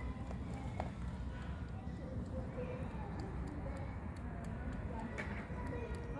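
A cat lapping milk from a small carton: soft, quick licking clicks over a low steady background hum.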